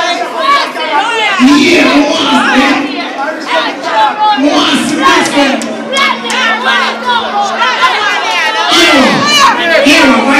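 Dense crowd shouting and cheering, many voices whooping over one another; loud throughout.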